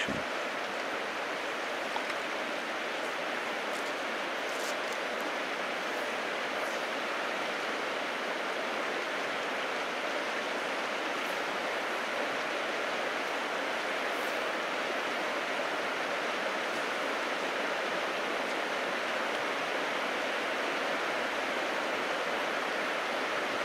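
Steady rush of river water flowing: the current of a winter river running past a gravel bank.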